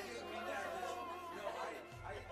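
Indistinct chatter of many people talking at once in a large hall, no single voice standing out.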